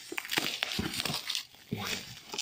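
Black plastic bubble-wrap packaging crinkling and crackling in irregular bursts as hands pull it off a cardboard box.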